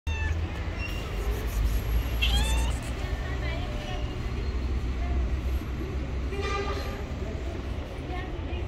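Tabby cat meowing a few times, asking for food, over a steady low rumble of city traffic.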